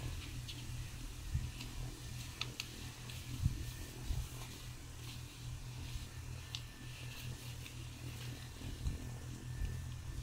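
Light rustles and clicks of sheets of drawing paper being handled and changed over, over a steady low room hum.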